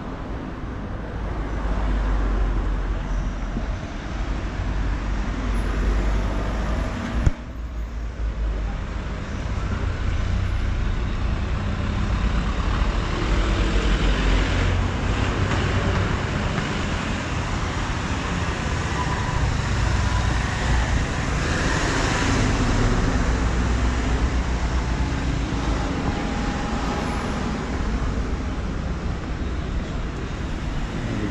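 Street traffic: cars and other motor vehicles driving past on the road, a steady low rumble that swells as vehicles go by. A single sharp click about seven seconds in.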